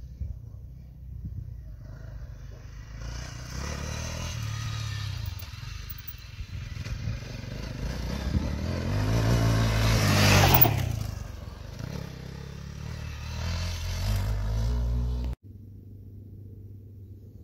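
Dirt bike engine revving as the bike rides up the dirt track toward the camera, growing louder, loudest as it passes close about ten seconds in, with its pitch dropping as it goes by. It revs again farther off, then the sound cuts off suddenly just before the end.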